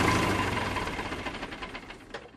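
Tractor engine sound effect at the end of the song, chugging in even beats that slow down and fade as the engine winds down to a stop, with the last of the music dying away under it.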